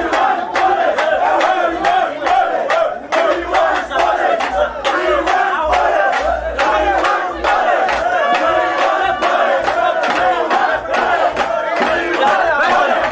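A crowd of young people shouting and chanting together, many voices at once, over a sharp beat of about three strokes a second.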